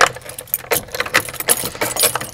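A bunch of keys jangling with rapid small clicks and metal chinks as a key is worked in an old door's lock.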